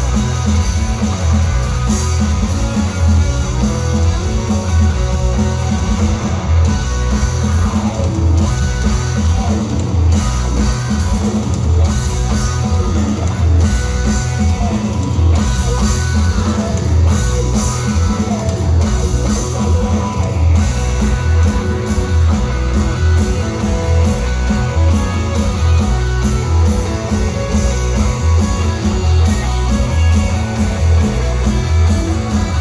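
Live band playing loud, guitar-driven rock with electric guitars and a heavy low end, heard from among the audience in the venue.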